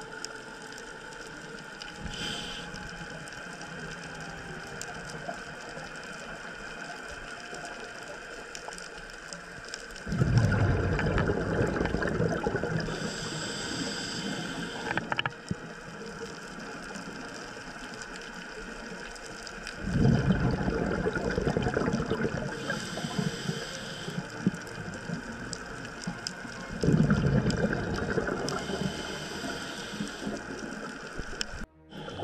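Scuba diver breathing through a regulator underwater: three long rushes of exhaled bubbles, each several seconds long and about ten seconds apart, each followed by a short hiss of inhalation. Between them there is a quieter steady background.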